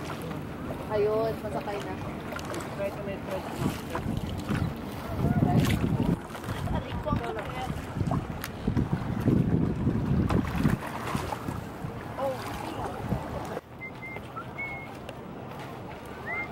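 Wind buffeting the microphone and water rushing along the hull of a bamboo outrigger sailboat under sail, with heavier gusts in the middle and faint voices in the background. The level drops suddenly near the end.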